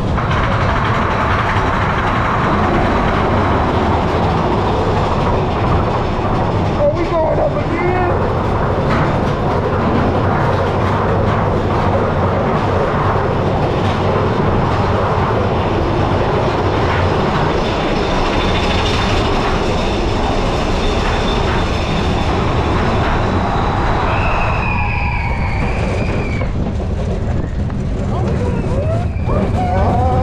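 Big Thunder Mountain Railroad mine-train roller coaster running along its track, heard from a seat on board: a loud, steady rumble and clatter of the wheels on the rails.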